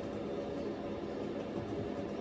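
Steady low hum with a faint hiss underneath, unchanging throughout: indoor background noise.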